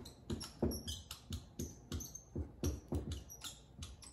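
Dry-erase marker squeaking and scratching on a whiteboard as words are written, in a quick irregular run of short strokes, about four a second.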